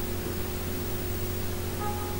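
Steady hiss with a low, constant electrical hum: the background noise of a recording microphone. Near the end there is a faint, brief pair of tones.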